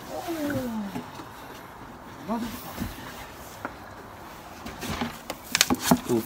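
A man's voice making a drawn-out, wordless sound that slides down in pitch for about a second, with a short vocal sound a couple of seconds later. A few sharp clicks from handling come near the end.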